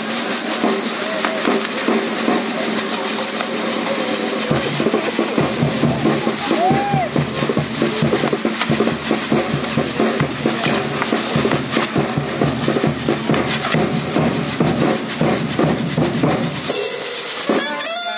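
Spinning pinwheel fireworks on a castillo tower crackling and popping densely, mixed with music and voices; a low steady rumble joins from about four seconds in until near the end.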